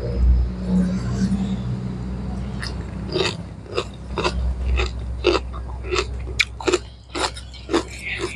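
Close-up crunching of a mouthful of raw vegetables and cabbage being chewed: crisp crunches about twice a second, starting a few seconds in, over a low steady rumble.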